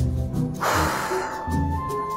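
Background music with a low bass beat pulsing about twice a second. A hissing sweep comes in about half a second in and falls in pitch over about a second, with a steady high tone held near the end.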